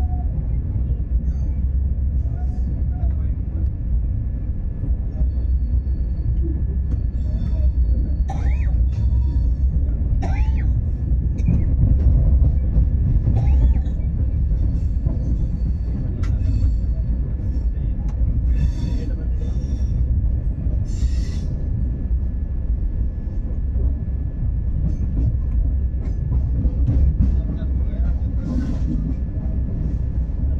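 Sadbhavna Express passenger train running on the track, heard from inside the coach: a steady low rumble of wheels and coach. A few brief squeals and light clatter come between about 7 and 22 seconds in.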